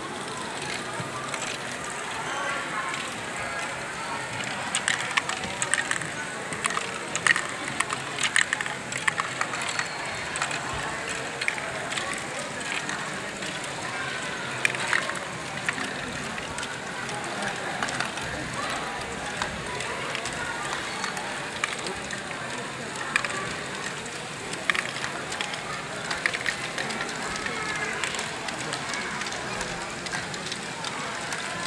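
Small plastic balls clicking and clattering as running LEGO Great Ball Contraption modules lift and roll them along, busiest in the first third, over indistinct background chatter of people.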